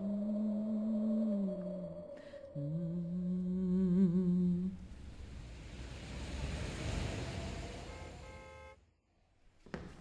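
A voice humming a slow tune in a few long held notes, the pitch stepping down and back up, with a wavering note about four seconds in. The humming gives way to a swelling rush of low, rumbling noise that cuts off suddenly about nine seconds in.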